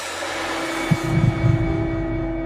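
Film-trailer soundtrack opening: a hissing swell under a held low drone, with deep low thuds about a second in.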